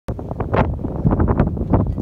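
Wind buffeting the microphone: a loud, uneven rumble of noise with gusty flares.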